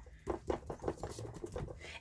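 Plastic-gloved fingers pressing and patting a small piece of poster board down onto wet alcohol ink: a run of soft, irregular little taps and rustles.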